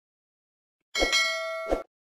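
Bell-ding sound effect for a notification-bell icon: about a second in, a sharp pop and a bright metallic ding that rings steadily for under a second, ending with another pop as it cuts off.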